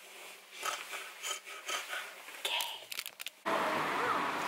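Soft, uneven rubbing and rustling of hands working through hair close to the microphone, with a couple of short spoken words. About three and a half seconds in, it cuts suddenly to louder outdoor street ambience with voices.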